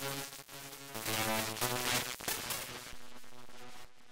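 Software synthesizer (Reason's Thor) playing a repeating pattern of notes through its wave shaper, the timbre shifting as the shaper mode and drive are changed. It turns harsher and brighter about a second in, and thins to a quieter steady tone near the end.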